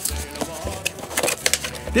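A small cardboard box being handled and opened, with flaps pulled apart and scattered clicks and rustles of card.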